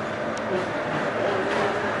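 Steady outdoor street background noise, an even hiss over a low rumble, with faint distant voices.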